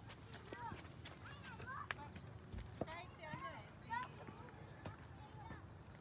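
Faint, distant voices of people calling and talking, too far off to make out words. A short high chirp repeats about every three-quarters of a second, with a few light clicks.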